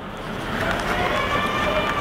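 Steady background noise with faint distant voices.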